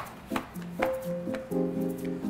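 Neapolitan pizza dough slapped and flipped on a floured marble counter: three sharp slaps within the first second, under background music with held keyboard notes.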